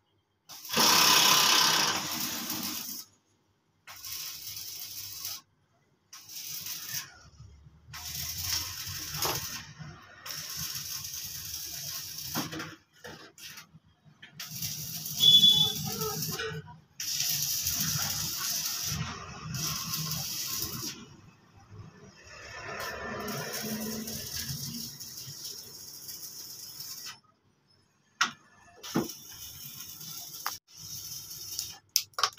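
Rustling and rattling of wire leads and small electronic components being twisted together by hand and worked with pliers. The sound comes in short stretches that cut off abruptly into silence, with a louder rustle about a second in.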